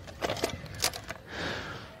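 Handling noise from hard objects: a few sharp clicks and clacks in the first second, then a brief rustling swish.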